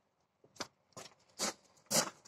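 Four brief scraping, rustling noises, roughly half a second apart, starting about half a second in.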